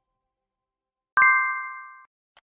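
Notification-bell 'ding' sound effect: one bright chime about a second in, ringing and fading away.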